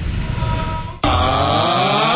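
Low rumbling street-traffic noise, then about a second in a sudden loud sound effect cuts in, a dense noisy burst with pitches that slide down and back up, like a comic music sting.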